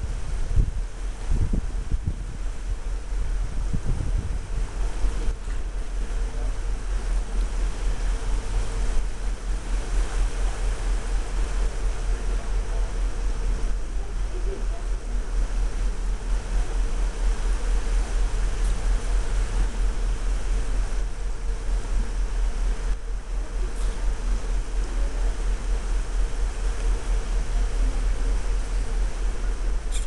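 Wind buffeting the microphone in a steady low rumble, stronger in gusts during the first few seconds, over a constant mechanical hum with one steady tone.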